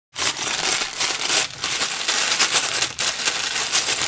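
Loud, dense crunching and rattling noise, made of many small clicks packed together.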